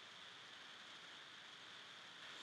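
Near silence: a faint, steady hiss of background noise.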